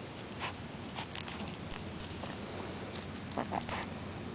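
English bulldog puppy chewing on something at the ground, right at the microphone: scattered small clicks and scrapes, with a quick cluster of them near the end.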